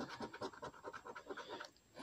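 A coin scratching the coating off a paper scratch-off lottery ticket in quick, faint back-and-forth strokes. The strokes stop shortly before the end.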